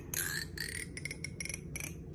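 A plastic comb handled right at the microphone: a quick, irregular run of sharp clicks, each with a brief tinny ring, thinning out toward the end.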